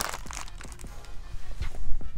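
Plastic hand-warmer packaging crinkling as it is passed from hand to hand, followed by faint rustling and a few light knocks of handling.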